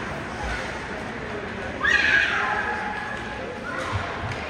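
A single loud, high-pitched yell about two seconds in, falling in pitch and lasting about half a second, over the low chatter of a hockey rink.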